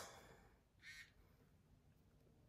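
Near silence: room tone, with one faint, short sound just under a second in.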